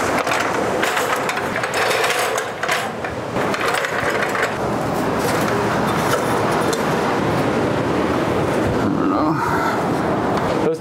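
Extension ladder knocking and rattling against rock as it is set up and climbed, the knocks mostly in the first half, over a steady rush of surf noise.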